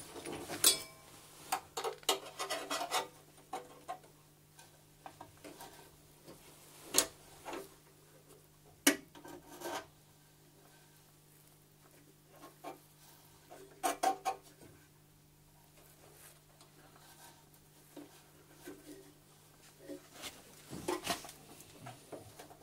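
Hand work in a Trabant 601 engine bay around the air filter housing: irregular metal clinks, knocks and scraping of a hand tool against metal parts. They come in short clusters, in the first few seconds, twice more before the middle, around two thirds of the way and near the end, with quiet stretches between.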